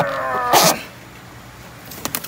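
Styrofoam shipping box squeaking as it is pulled across a pickup truck bed: one half-second squeal, falling slightly in pitch, ending in a short scrape.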